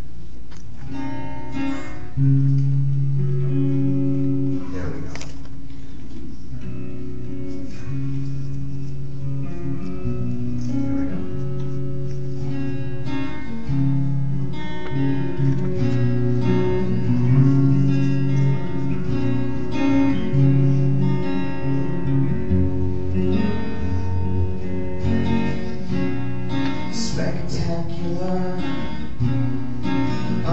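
Acoustic and electric guitar playing chords together, with the chords changing about every two seconds, as the instrumental introduction to a song. The guitars are tuned down to drop C# with A at 432 Hz.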